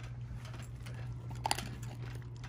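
Small dogs eating dry kibble from glass bowls: quiet crunching and light clicks of kibble and teeth against the glass, with a brief louder cluster of clicks about one and a half seconds in.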